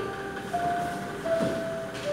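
Digital piano played slowly: three held single notes stepping down in pitch, each lasting about two-thirds of a second.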